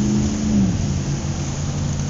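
Street traffic ambience: steady road noise with a low vehicle engine drone, starting abruptly.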